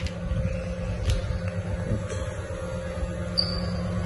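A steady low machine hum, with a few short clicks and knocks and a brief thin high tone near the end.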